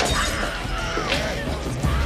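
Film soundtrack music with a sudden sharp crash right at the start and another noisy burst about a second in.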